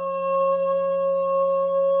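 Quartz crystal singing bowl sounding one steady, sustained tone.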